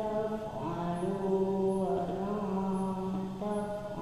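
A man's voice chanting in long held notes that step slowly up and down in pitch, in the melodic style of Quran recitation.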